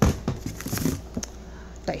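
Tin cans and food packages being handled in a cardboard box: a sharp knock at the start, then a run of lighter knocks and rustling, and one more knock near the end.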